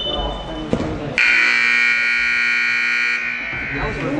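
Indoor soccer arena's scoreboard buzzer sounding one steady blast of about two seconds, starting about a second in: the game clock running out at the end of the half. Voices can be heard around it.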